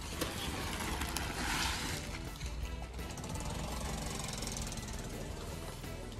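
Sarees and their plastic wrapping rustling as they are pulled out and spread on the floor, loudest in the first two seconds, over background music.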